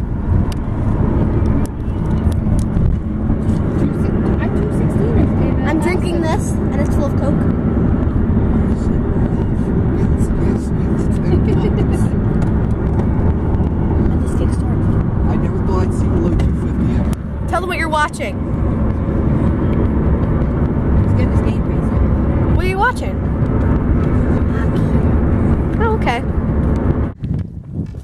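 Steady road and engine noise heard from inside a car cruising at highway speed, with a few brief voices over it. The rumble drops away near the end.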